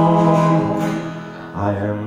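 Acoustic folk music between sung lines of a slow traditional song: acoustic guitar and Appalachian mountain dulcimer holding a chord that fades after about a second, with a new chord struck near the end.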